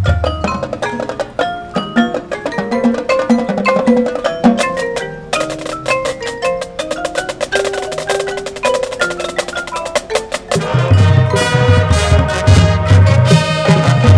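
Marching band front ensemble playing mallet percussion, marimbas and vibraphones, in rapid struck notes that ring on. About ten and a half seconds in, the music gets louder and a pulsing low part comes in underneath.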